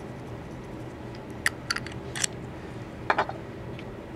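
A few light clicks and ticks from small hand tools being handled at a workbench: a quick cluster around the middle and a pair near three seconds in, over a steady low hum.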